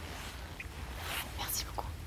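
Soft breathy whispering, strongest in the second half.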